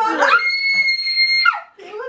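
A high-pitched scream held on one steady pitch for about a second, with talk just before and after it.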